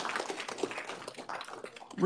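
A roomful of people applauding, dense irregular hand claps that thin out and fade towards the end.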